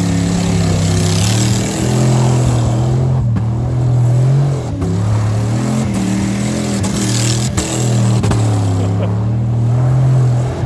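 Dodge Durango's V8 engine revving hard, its pitch rising and falling in waves while the truck spins donuts with its tyres spinning on loose dirt.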